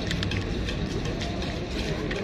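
A street cat crunching dry kibble right at the microphone: an irregular run of short, crisp clicks over a steady low background rumble.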